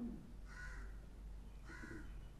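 A bird calling twice, two short calls a little over a second apart, faint, after a brief low sound at the very start.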